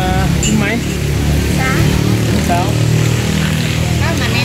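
A steady low motor rumble, like an engine running nearby, under short bursts of talk and laughter.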